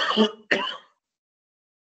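A person clearing their throat with a rough cough: two short bursts within the first second.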